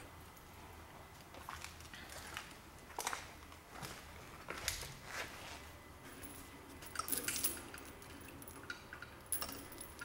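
Faint scattered clicks, rustles and small clinks from a person moving about while filming, with a brighter cluster of clinks about seven seconds in and again near the end.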